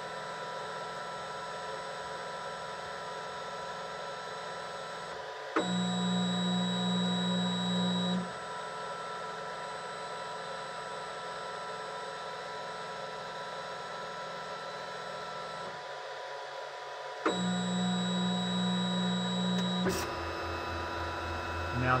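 Flashforge Guider 2 3D printer's stepper motors whining steadily while powered during bed levelling. Twice, about a quarter and three quarters of the way in, a click starts about two and a half seconds of louder motor running as the machine moves.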